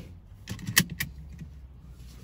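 A few sharp metallic clicks and jingles from small metal objects being handled inside a car, over a low steady hum.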